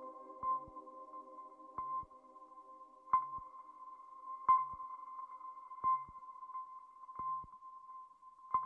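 Sparse electronic music: a held high tone with a ping and a soft low thud repeating about every second and a half. A lower sustained chord fades out over the first few seconds.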